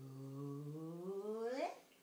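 A man's voice humming one long note that slowly rises in pitch, then climbs steeply and stops near the end.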